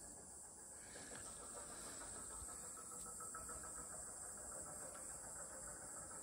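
Quiet forest ambience with a faint, steady high-pitched chirring of insects.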